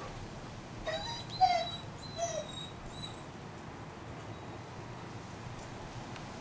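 A dog giving three or four short, high whines in quick succession, the loudest about a second and a half in, then falling quiet.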